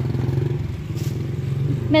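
A vehicle engine running steadily at low revs, with an even pulsing hum that dips a little about halfway through.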